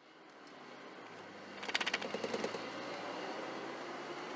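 Ford Ranger's swapped-in 2.5-litre four-cylinder engine, heard from inside the cab, idling and then pulling away from a stop under light throttle. A quick run of rattly pulses comes midway for about a second.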